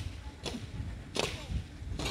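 Short swishing strokes scraping bare dry ground, repeating about once every three-quarters of a second, over a low rumble of wind on the microphone.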